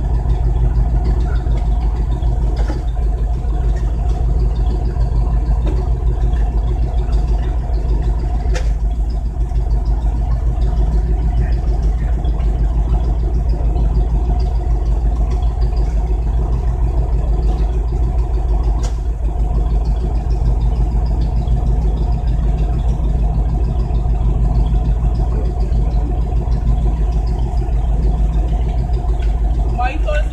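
A vehicle engine idling steadily, an even low drone that does not change, with two faint clicks, about a third and about two thirds of the way through.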